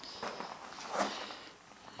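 A few soft footsteps, the loudest about a second in.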